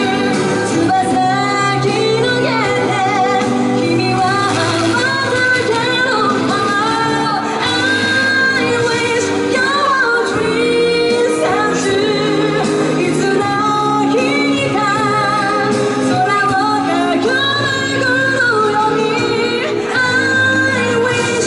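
A woman singing a pop ballad live into a handheld microphone over instrumental accompaniment, her held notes wavering with vibrato.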